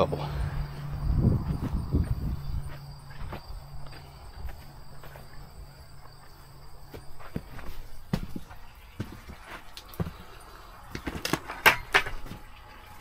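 Footsteps walking across grass, over the low steady hum of the bubbler's air pump, which fades out about seven seconds in as the steps move away. A few sharp knocks and clicks near the end.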